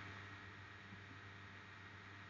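Near silence: faint room tone, a soft steady hiss with a low hum.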